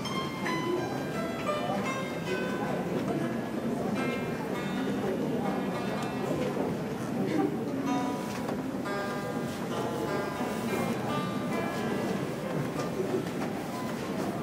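Đàn tranh, the Vietnamese plucked zither, played solo in continuous runs of quick plucked notes. It is a piece in the southern Vietnamese scale.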